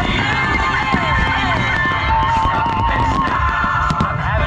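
Loud music with a wavering sung or lead melody, played over loudspeakers to accompany a fireworks display, mixed with the low rumble and crackle of firework bursts. A sharp firework bang comes near the end.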